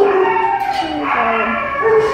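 A young dog's long whining howl that slides down in pitch near the end.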